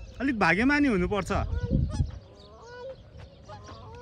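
Goose honking loudly for about two seconds, a wavering, nasal call, followed by fainter short bird calls.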